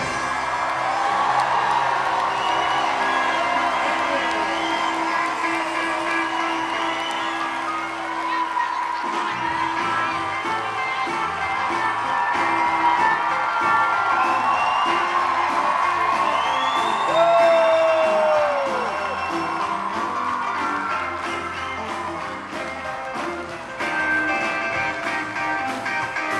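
Live rock and roll band playing in a large hall with the crowd cheering and whooping over it. The band's held chord gives way about nine seconds in to a choppier rhythm. A little past halfway, one loud whistle slides down in pitch.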